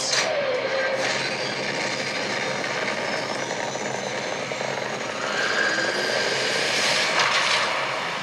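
Sci-fi film trailer sound design: a steady, noisy engine-like rumble with faint gliding tones. It swells louder about five seconds in and eases off near the end.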